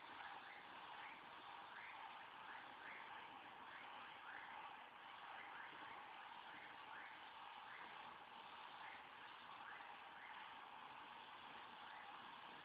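Near silence: a faint steady hiss with a soft chirp repeating about twice a second.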